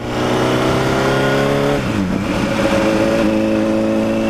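Honda CBR1000RR sportbike's inline-four engine pulling along at road speed, over a rush of wind noise. Its note climbs slightly, dips briefly about two seconds in, then holds steady.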